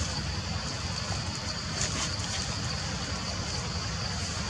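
Steady outdoor background: a continuous low rumble under a steady high-pitched buzz, with no distinct event.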